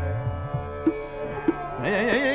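Hindustani classical vocal recital in an old 1959 radio recording: a steady drone with tabla strokes, the bass drum's pitch gliding, and a few sharp strokes. Near the end the singer's voice comes in with a wavering, ornamented phrase.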